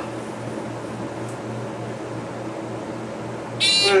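Delaware hydraulic elevator car rising, with a steady low hum in the cab. Near the end a short floor-passing beep sounds as the car reaches the next floor.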